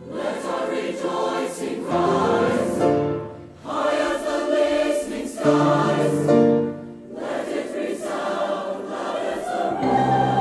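High-school honor choir singing in harmony, phrase after phrase, with short breaks about three and a half and seven seconds in.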